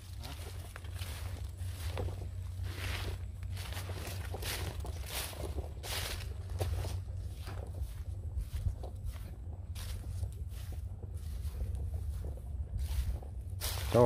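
Footsteps through dry, dead vegetation, rustling at each step about once a second, over a steady low rumble.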